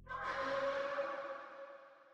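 A sudden ringing musical hit with echo, made of several steady tones, that starts just after the low drone before it dies away and decays over about two seconds.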